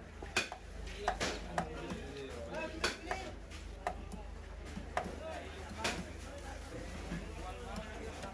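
A heavy knife striking and scraping a wooden chopping block, a series of irregular sharp knocks, over a background of voices.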